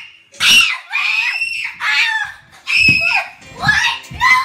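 Children screaming with excitement at a surprise, in a run of about five short, high-pitched shrieks.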